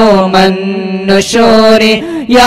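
Arabic salawat (praise of the Prophet) chanted in a drawn-out, melismatic melody: a long held note, then a new phrase begins about a second and a quarter in.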